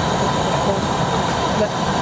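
Steady drone inside a small passenger plane's cabin while it waits on the ground, with a faint steady whine.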